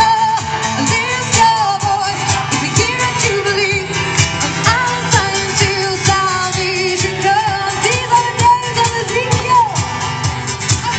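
A woman singing live into a microphone over a backing track with a steady beat, amplified through PA speakers.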